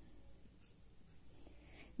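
Faint strokes of a felt-tip marker on a white sheet, drawing a short arrow, with a couple of brief scratches.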